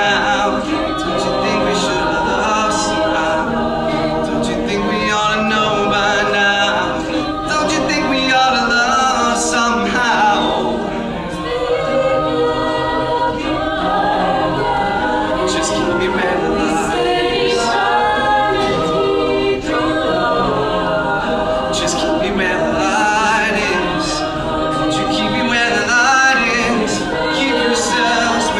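Mixed-voice a cappella group singing a slow pop song, several voices in close harmony with a lead voice over them, steady throughout.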